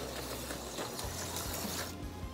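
Auto World X-Traction HO slot car running on plastic track: a steady whirring hiss from its small electric motor and the car on the rails.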